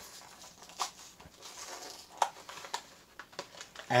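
Plastic blister card of a diecast model car being handled and opened: faint crinkling with a handful of sharp plastic clicks scattered through.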